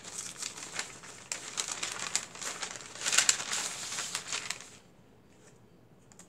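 Paper rustling and crinkling as a printed paper bag is opened and the papers inside are pulled out, loudest a little past three seconds in; the handling stops about five seconds in.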